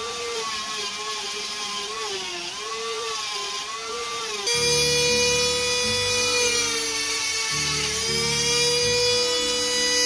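Handheld rotary tool with a sanding drum running at high speed, sanding out the inside of a black wooden ring. Its high whine wavers in pitch at first, then holds steadier about halfway through, when background music with a bass line comes in.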